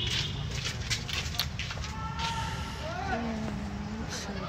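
Faint voices of people talking in the background over a steady low rumble, with a few short clicks in the first two seconds.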